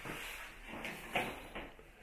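A few soft knocks and rustles over a steady background hiss.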